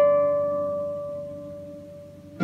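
Solo pedal harp: a mid-high note with lower notes beneath it, plucked just before, ringing on and slowly fading, with no new note plucked.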